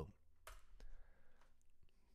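A few faint computer keyboard key clicks, the sharpest about half a second in, as a typed terminal command is entered.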